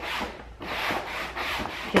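A damp sponge scrubbing the textured, burlap-like weave of a lampshade in a few repeated strokes, wiping the dirt off.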